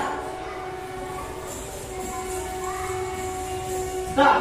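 Train sound effect: a train running, with steady horn-like tones held throughout and a second tone joining about halfway.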